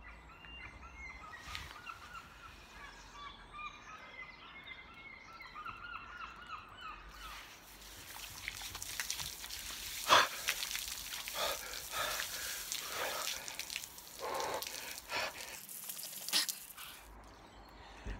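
Birds chirping for about the first seven seconds, then a garden hose spray nozzle running cold water over a man's head and body, a steady hiss broken by several of his short sharp gasps at the cold.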